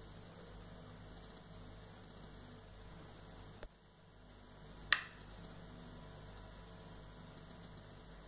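Faint steady room hum and hiss, broken by a small click a little past three and a half seconds in and one sharp click, the loudest sound, about five seconds in.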